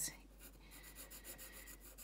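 Faint scratching of a graphite pencil sketching on paper, in short repeated strokes.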